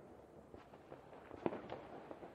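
New Year's Eve fireworks and firecrackers going off: scattered, fairly faint pops and bangs, the loudest about one and a half seconds in.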